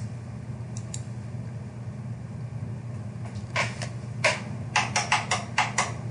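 Steady low hum with a run of about ten quick, light clicks and taps from about three seconds in: hands handling the camera setup close to the microphone.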